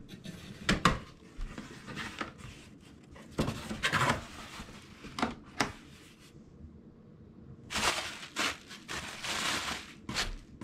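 A taped cardboard shipping box being opened by hand: a few sharp clicks near the start, then scattered scraping and tearing as the tape gives and the flaps are pulled open. Near the end comes a longer stretch of crinkling plastic air-pillow packing as it is lifted out.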